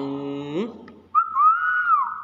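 Hill myna giving one clear whistle that rises, holds and falls away, starting about a second in. A low, drawn-out voice comes just before it.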